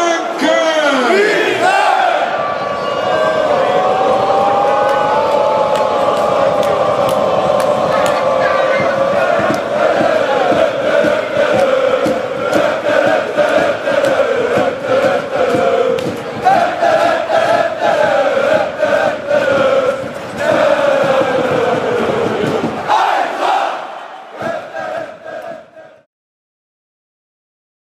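Football crowd in a stadium stand singing a chant together to celebrate a goal, with rhythmic hand clapping joining in partway through; it fades out near the end.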